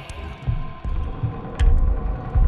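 Soundtrack of low, heartbeat-like pulses about a second apart over a steady hum, the strongest pulse coming near the end with a short click.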